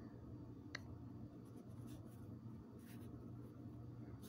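Faint, soft rustling of a hand on paper sheets laid on a cloth-covered table, with one small click about three quarters of a second in.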